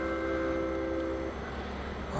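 Station public-address chime ringing out: several bell-like notes sound together and stop about two-thirds of the way through, the signal that a station announcement is about to follow. A low steady hum lies underneath.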